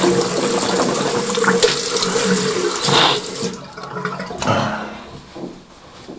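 Tap water running into a sink as someone washes their face. The water is shut off abruptly about three and a half seconds in, leaving quieter, scattered rustling sounds.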